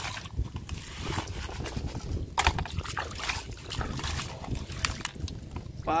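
Water sloshing and splashing in uneven bursts as a plastic toy dump truck is swished through it to wash off sand.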